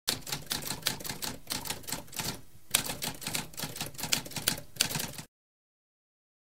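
Typewriter sound effect: rapid keystrokes clacking, with a short pause about two and a half seconds in, then more typing that stops a little after five seconds.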